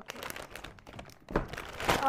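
Clear plastic bag of 3D-pen filament coils crinkling as it is handled, with a knock about a second and a half in and another near the end.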